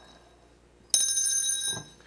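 A bell rings once, about a second in: a clear, high ring that holds for just under a second and then stops, signalling the opening of the hearing.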